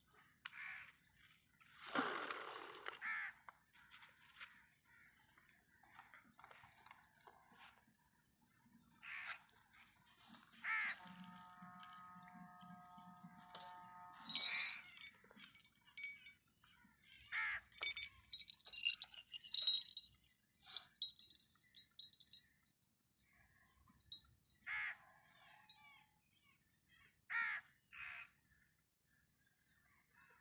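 Crows cawing on and off in short separate calls, with other birds calling. Near the middle a steady pitched sound holds for about three seconds.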